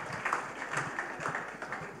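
Audience applauding, a dense patter of many hands clapping that grows quieter towards the end.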